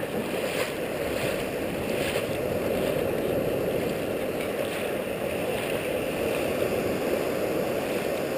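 Steady, muffled rush of shallow ocean surf washing in and out.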